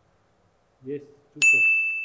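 A single bell-like ding sound effect: one sharp strike about one and a half seconds in that rings on and slowly fades. It marks the lie detector verdict on the answer as truthful.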